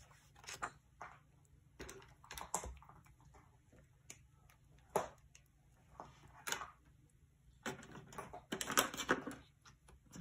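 Paper and craft supplies being handled on a desk: intermittent rustling with small taps and clicks, busiest near the end.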